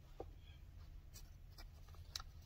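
Near silence, with faint rustling and a few soft, short scratches from a pillow and its fabric label being handled.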